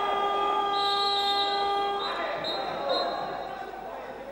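Arena horn sounding one steady, buzzy tone for about two seconds, the signal stopping play for a team timeout in a water polo match.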